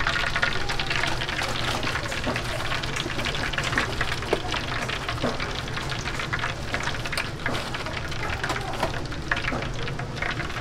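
Hot oil crackling in a commercial deep fryer, a dense steady sizzle of many fine pops, with a low steady hum beneath it.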